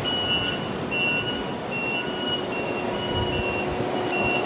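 Busy city street traffic noise, a steady rumble and hiss of buses and cars, with a high electronic beeping tone sounding on and off in short spells, stepping slightly up and down in pitch.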